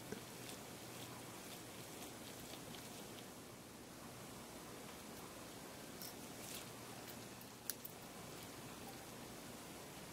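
Faint small clicks and scratches of a precision screwdriver turning a tiny screw out of a camera's plastic switch assembly, with two sharp ticks close together about three-quarters of the way through.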